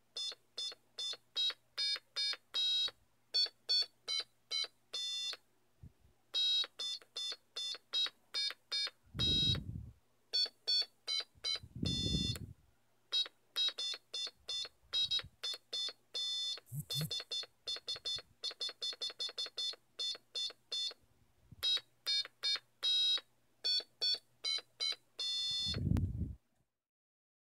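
Piezo buzzer on an Arduino keyboard playing a melody: a run of short, buzzy electronic beeps at changing pitches, one for each button pressed. A few dull low thumps come in between, twice in the middle and once at the end.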